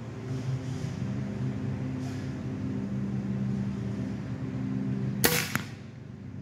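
An Umarex Air Saber pre-charged pneumatic arrow rifle fires a crossbow bolt once, a single sharp crack about five seconds in, followed a third of a second later by a second, fainter crack. A steady low hum runs underneath.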